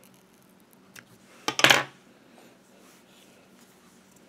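Small scissors snipping: a faint click about a second in, then a louder, quick snip half a second later.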